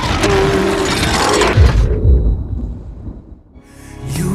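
Trailer sound effect of glass shattering over music, with a deep boom about a second and a half in. The sound then dies away to a low rumble, and a short swell leads back into the music near the end.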